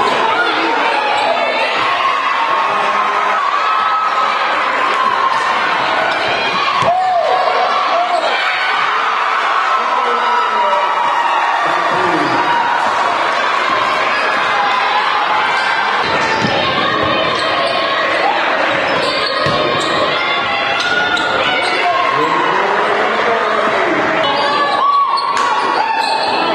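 Live sound of a women's college basketball game: the ball bouncing on the hardwood court under a busy mix of players' and spectators' voices in the gym.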